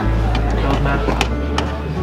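Restaurant dining-room background of voices and music, with a few sharp clinks of a serving utensil against the metal pans of a carving cart.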